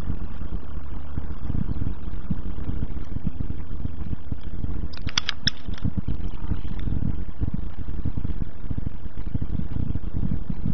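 Heavy, continuous low rumble filling a car cabin, with a short burst of clicks or rattles about five seconds in.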